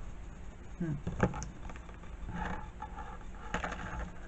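Cardstock being handled and set down on a plastic cutting mat: a sharp tap about a second in, a short scraping rustle of paper sliding on the mat, and another tap near the end.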